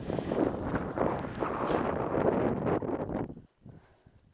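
Skis hissing and scraping over snow during a downhill run, mixed with wind buffeting a helmet-mounted camera's microphone. The noise cuts off suddenly about three and a half seconds in.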